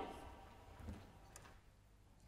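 Near silence: room tone in a pause between spoken phrases, with one faint click about a second and a half in.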